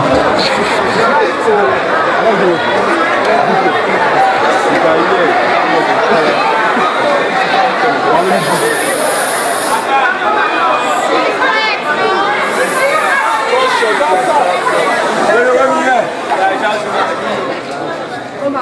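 Many voices shouting and talking over one another, a dense loud crowd of actors on a stage in a large hall, with a short hiss about eight seconds in; the voices thin out and grow quieter near the end.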